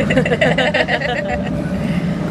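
A man laughing in quick repeated bursts, over a steady low background hum.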